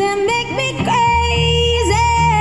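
Female lead vocalist singing live with a rock-pop band, her voice gliding between notes and then holding a long high note from about a second in. An electric bass comes in with a low sustained note under it.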